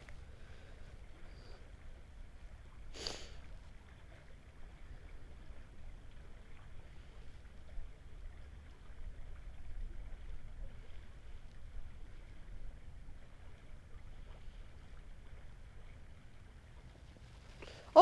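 Faint steady outdoor background: a low rumble with a soft hiss, and one short rustle about three seconds in.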